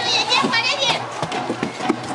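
Chatter of a passing crowd, with high, wavering squealing voices in the first second.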